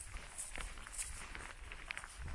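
Soft footsteps of a hiker walking through wet meadow grass, quiet, with a few faint rustles.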